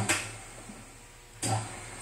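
Rondo automatic dough divider rounder running with a steady low hum while its buttons are held down, after a mechanical knock at the start.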